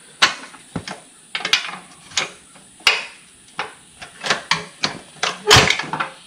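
Irregular series of sharp metal clanks and knocks, a dozen or so, from hands and tools working on a Tesla Model 3 rear drive unit and its suspension parts. The loudest comes about five and a half seconds in.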